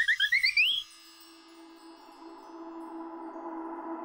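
A quick run of rising, chirpy cartoon notes that ends under a second in, followed by a quiet ambient synthesizer drone of held tones that slowly swells.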